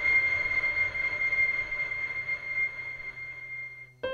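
A synthesized reverb sound file used as an impulse response for a convolution reverb: a steady high ringing tone over a hiss, slowly fading away and cutting off just before the end.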